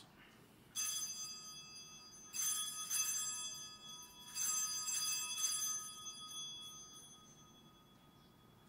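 Altar bells rung at the elevation of the host after the consecration: a metallic ringing shaken in about five bursts, each renewing the tone, fading away near the end.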